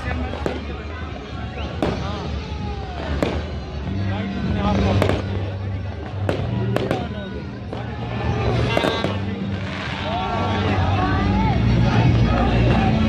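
Aerial fireworks bursting overhead: about eight sharp bangs spaced a second or two apart, over crowd voices and music.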